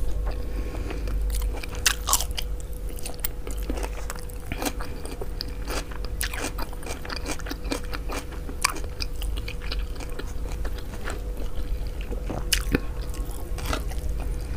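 Close-miked eating sounds: a person chewing mouthfuls of mansaf, rice with jameed yogurt sauce eaten by hand, with many scattered sharp clicks and smacks.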